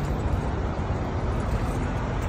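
Steady low rumble of idling diesel truck engines in the lot.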